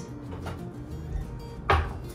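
A glass mixing bowl set down on a plastic cutting board: one short knock near the end, over faint background music.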